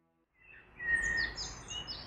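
Birds chirping and calling in short, high sweeping notes, fading in about half a second in over a low outdoor rumble.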